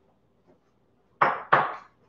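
Two short noisy bursts from a wok on the stove about a second in, a third of a second apart, each dying away quickly, as he works the food in the pan.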